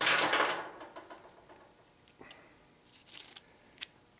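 Hand handling noises from a nylon starter pull rope, needle-nose pliers and a plastic pull handle being worked on a bench: a loud rustle at the start that fades within a second, then scattered small clicks and scrapes.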